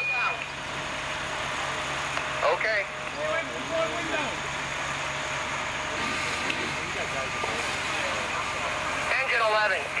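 Fire engine running steadily, a constant low engine hum under a broad even rush. Indistinct voices come over it about two and a half seconds in and again near the end.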